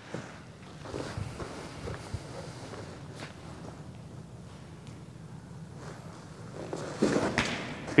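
Footsteps and shuffling on a portable pitching mound as a baseball pitcher steps on and comes set. Near the end there is a louder burst of sound as he strides down the mound and throws.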